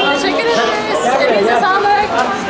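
Speech only: several people chattering at once, women's voices among them.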